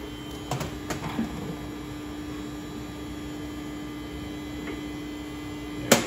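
A steady electrical hum, with a few light clicks in the first second or so and one sharp click near the end, as metal machine parts are handled.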